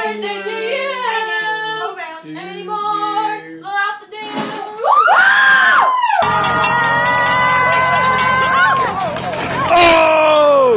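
A few people singing a slow tune together over a cake of lit candles. Then a sudden rush of noise and a shriek that rises and falls, followed by a long, loud held scream.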